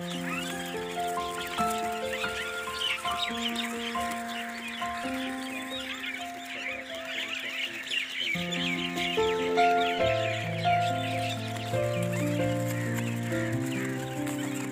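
Background music of slow held chords, a deep bass note joining about ten seconds in, over the dense, continuous chirping of a large flock of small birds: sparrows, mynas and bulbuls.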